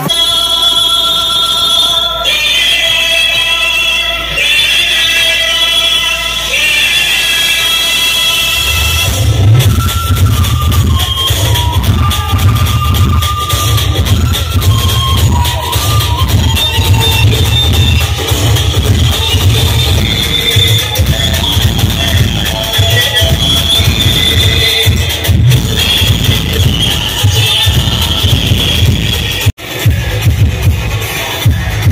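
Music: a high melody over a low steady drone, with a heavy bass beat coming in about nine seconds in.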